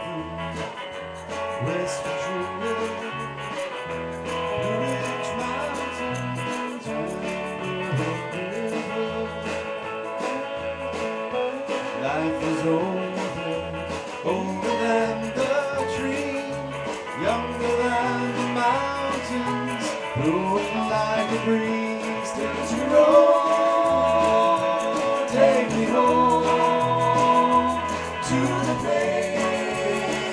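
A live band playing through a PA: strummed acoustic guitar, electric guitar, bass and drums, with a man singing lead. The music gets louder in the second half.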